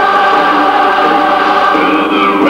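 A chorus of many voices singing together in sustained, held notes.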